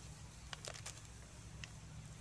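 Faint, scattered crisp clicks as fresh red chili peppers are split and pulled apart by hand over a wooden chopping board.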